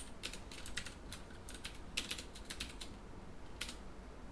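Typing on a computer keyboard: quick runs of keystroke clicks with short pauses between them.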